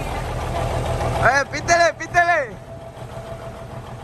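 Kenworth semi-truck's diesel engine idling as a low, steady rumble that drops away about a second in.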